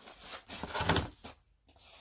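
Rustling and knocking of packaging as diet-shake sachets are rummaged out of a cardboard delivery box, with a louder burst of handling noise about a second in.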